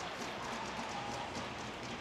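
Faint arena crowd cheering and clapping for a goal just scored, an even pattering noise with no single loud event.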